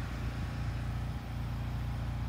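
A small engine running steadily at an even low hum, with no change in speed.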